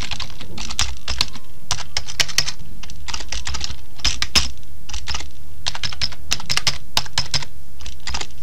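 Computer keyboard being typed on, keys clicking in quick irregular runs, over a steady low hum.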